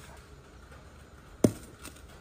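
A metal pot lid set down on a stone countertop: one sharp clank about one and a half seconds in, followed by a lighter tap.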